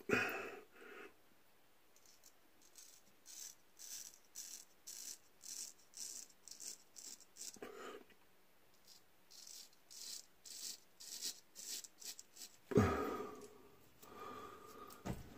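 Gold Dollar straight razor scraping through lathered beard stubble in a run of short strokes, about two a second. A louder, lower sound comes near the end.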